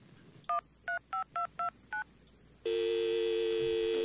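Telephone touch-tone dialing: six quick two-note keypad beeps, then a steady two-note telephone line tone held for about two seconds.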